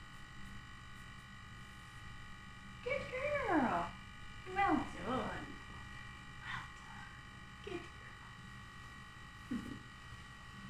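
A woman's soft, drawn-out cooing praise to a dog, two long calls falling in pitch about three and five seconds in, with a few shorter fainter sounds later, over a steady electrical hum.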